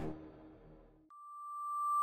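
The tail of an intro music sting dies away, then a single steady electronic tone starts about halfway through and swells steadily louder.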